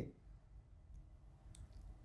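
Near silence: room tone through a lapel microphone, with two faint clicks about a second and a second and a half in.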